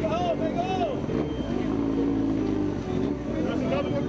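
People talking over the steady hum of idling motorcycle engines, with one voice clearest in the first second.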